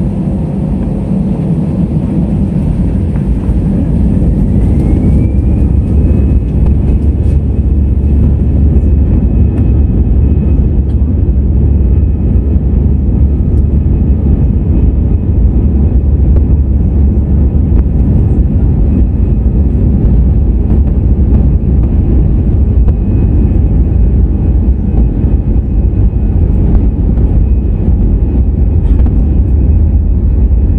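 Airbus A320's turbofan engines, heard from a cabin seat over the wing, spooling up to takeoff thrust. A whine rises in pitch about three to six seconds in and then holds steady over the loud low rumble of the takeoff roll.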